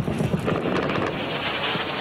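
Battle noise: a dense, irregular clatter over a steady low rumble.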